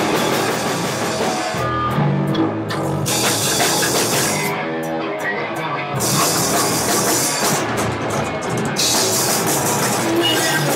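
Live punk rock band playing an instrumental passage: electric guitars and drum kit, with no singing. The cymbal wash drops out twice for a second or so, leaving guitar and drums.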